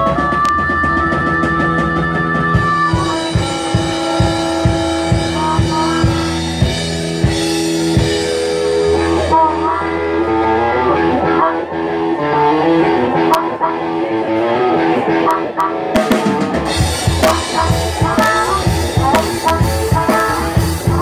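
Live blues-rock band playing an instrumental passage, loud: a drum kit keeps a steady beat under electric guitar and bass. A harmonica holds long high notes over it in the first few seconds, then plays a busier run of shifting notes from about halfway through.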